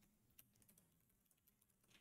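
Near silence with a few faint computer keyboard keystrokes, scattered clicks as code is typed.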